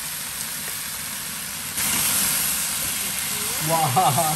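Spiced chicken pieces frying in a pan with a steady sizzle. The sizzle grows louder a little under two seconds in, as chopped red onion goes into the hot pan.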